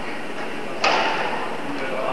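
A badminton racket striking a shuttlecock once, a sharp crack about a second in that echoes through a large hall, over a steady background hiss and murmur.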